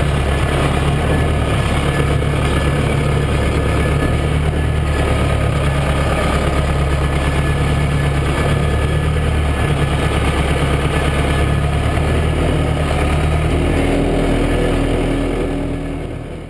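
Massey Ferguson 590 tractor's four-cylinder diesel engine running steadily while the tractor drives with a round bale on its front loader. The engine note changes near the end, then the sound fades out.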